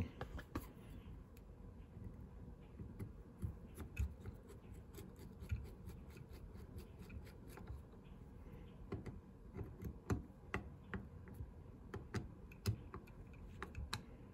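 Screwdriver turning small tapered screws into the metal plate of a Mikuni BN-series diaphragm carburetor: faint, irregular clicks and scrapes of the blade in the screw heads and of metal parts being handled.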